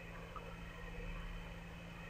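Faint room tone between sentences of narration: a steady low hum with a light hiss.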